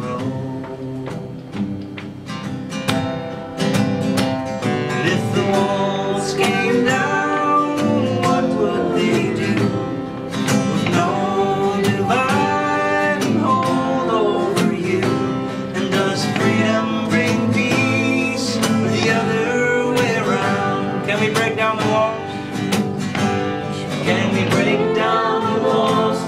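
Acoustic guitar strummed with a man singing a folk song over it. The guitar is quieter for the first few seconds, then the singing comes in.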